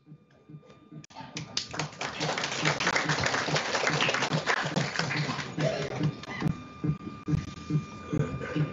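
A small group of people clapping, starting about a second in and thinning out over the last few seconds, with low voices murmuring underneath and a faint steady electrical tone.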